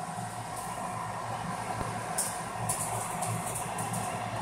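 Steady hum of an egg incubator's circulation fan running, with a couple of faint light clicks about two seconds in.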